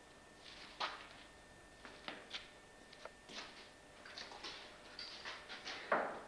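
Quiet, irregular light clicks and taps of small hand work on a wooden surface, about a dozen, with the loudest one just before the end.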